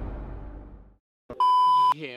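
Background music fading out within the first second, then, after a short gap, a steady censor bleep lasting about half a second near the end.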